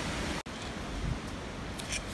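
Steady wind noise on the microphone outdoors, an even hiss and rumble with no distinct events, broken by a brief dropout at an edit cut about half a second in.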